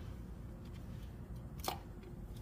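Valve spring compressor being handled on an engine cylinder head: quiet, faint handling noise, then one sharp click near the end as the tool is set onto a valve spring.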